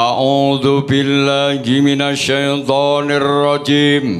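A man's voice chanting into a microphone in long held notes with a slightly wavering pitch, broken by brief pauses between phrases.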